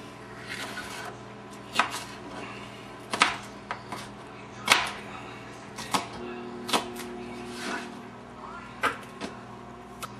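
Kitchen knife slicing sweet mini peppers on a cutting board: a run of irregular sharp knocks as the blade hits the board, about one every second or so, over a steady low hum.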